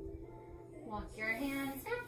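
Background music: a soft instrumental passage, with a singing voice coming in about a second in.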